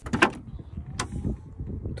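Rear door of a 1987 Mitsubishi Pajero unlatched by its handle and swung open: a loud latch clunk at the start and a sharp click about a second in.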